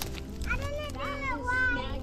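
A young child's high-pitched voice vocalizing without clear words, the pitch bending up and down, starting about half a second in.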